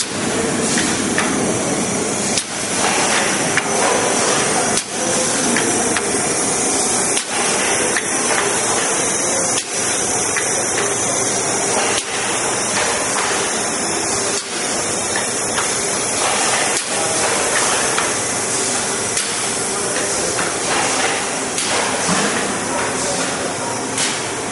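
Bartelt IM714 intermittent-motion horizontal form-fill-seal pouch machine running: a steady mechanical clatter and hiss, with a sharp knock repeating about every two and a half seconds as it cycles.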